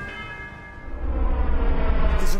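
News-programme bumper sting: bell-like chime tones ringing out and fading, then a deep low rumble swelling up about a second in.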